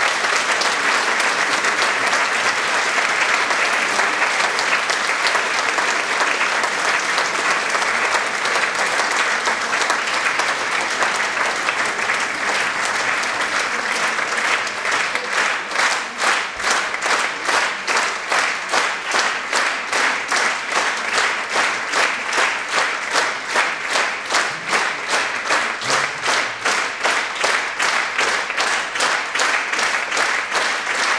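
Concert audience applauding. About halfway through, the clapping falls into step as rhythmic applause in unison.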